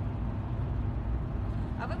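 Steady low rumble of a car heard from inside its cabin, with a woman's voice starting near the end.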